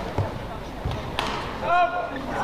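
Badminton rally sounds: shoes thudding on the court and a sharp racket strike on the shuttlecock, followed near the end by a short, loud, high-pitched shout from a player as the point is won.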